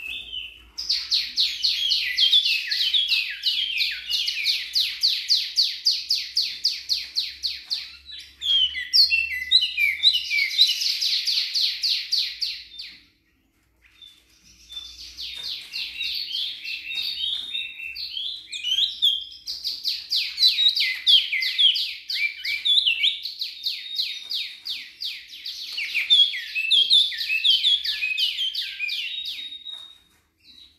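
A caged wambi mini songbird singing long runs of rapid, high chirps, about seven notes a second, with a short break about halfway. This is a lure song (pancingan), meant to make other birds answer.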